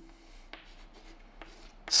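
Chalk writing on a blackboard: faint scratching with a couple of light taps as letters are drawn.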